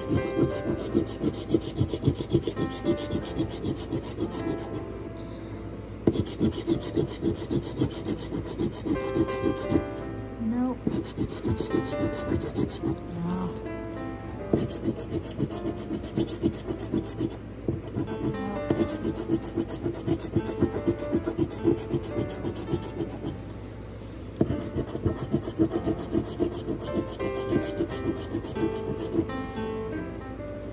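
A metal Dogecoin novelty coin scraping the coating off a paper scratch-off lottery ticket in quick, repeated strokes, with a few short pauses between runs.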